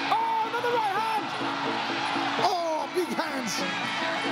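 Traditional Muay Thai fight music (sarama): a Javanese oboe (pi java) playing a wavering, sliding melody over a steady accompaniment. Crowd noise rises briefly about halfway through.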